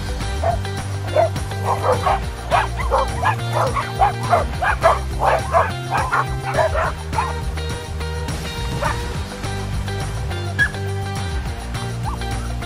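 Dogs barking, many short barks in quick succession from about two to seven seconds in, thinning out afterwards, over background music.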